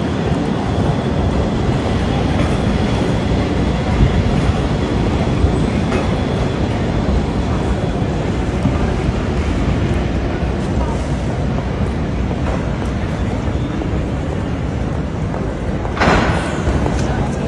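A tram running along a city street: a steady rumble of wheels and motor under general street noise, with voices of passers-by.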